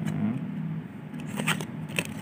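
Playing cards handled in the fingers during a card-change sleight, with a few light, sharp card clicks in the second half. A steady low hum runs underneath.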